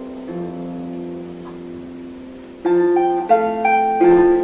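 Celtic harp played solo: plucked notes ring on and slowly fade, then about two-thirds of the way in a louder plucked chord starts a run of new notes.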